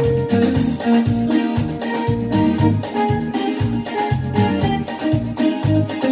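Yamaha PSR-S7-series arranger keyboard playing an easy-listening instrumental tune: held melody notes over a pulsing bass line and a steady beat.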